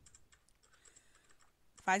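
Faint, scattered small clicks and light taps as a thin modelling tool and fingers work a small ball of cold porcelain clay. A woman's voice starts near the end.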